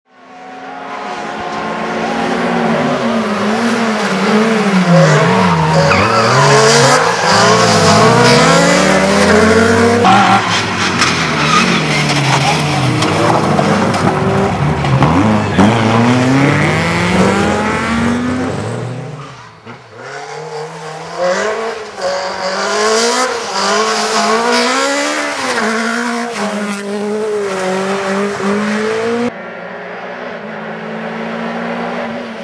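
Volkswagen Golf rally cars at full throttle, engines revving up and down through gear changes, in clips cut one after another. The sound fades in at the start and changes abruptly at the cuts.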